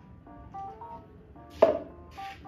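Soft background music with a simple melody; about one and a half seconds in, a single sharp knock as a plastic measuring jug is set down on the countertop.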